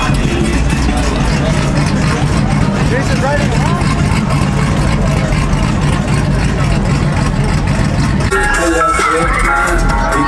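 A pickup truck engine running low and steady, under the chatter of a crowd. About eight seconds in, music with plucked guitar comes in and takes over.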